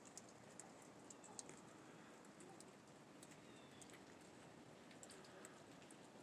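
Near silence: faint outdoor ambience during snowfall, with scattered faint, irregular ticks.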